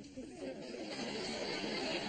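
Studio audience noise building from about half a second in: many voices and reactions blending into a dense, rising murmur.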